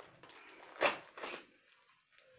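Packaging being handled and torn open as game pieces are unwrapped: crinkling rustles, the loudest just under a second in and a smaller one about half a second later.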